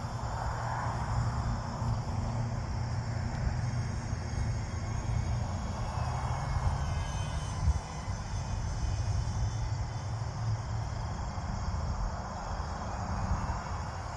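Faint whine of the twin electric ducted fans of an E-flite UMX Me 262 micro model jet in flight, swelling and fading a few times as it passes over, above a steady low rumble of wind on the microphone. Crickets chirp faintly in the background.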